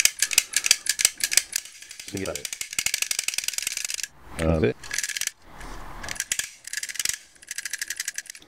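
A lock pick worked against the spring-loaded pins of a pin-tumbler cylinder held under a tension wrench: rapid runs of small metallic clicks that come in spurts. The cylinder is fitted with spool security pins and does not open.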